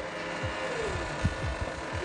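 JLG boom lift's motor and hydraulics running as the platform is driven up, a steady whine that sags and fades about half a second in and comes back near the end.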